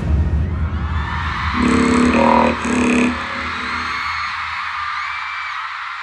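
Live concert audience screaming and cheering as the music ends, with faint high squeals through it and two short pitched shouts or notes about two and three seconds in.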